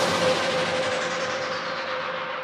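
House music breakdown: the kick drum and bass have just cut out, leaving a held tone over a hissing wash. A filter steadily closes down from the top of that wash while it slowly fades.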